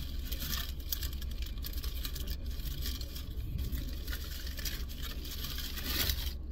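Steady low rumble inside a car's cabin, with faint small clicks and rustles over it.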